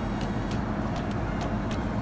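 A steady low background rumble with no distinct events, only a few faint light clicks.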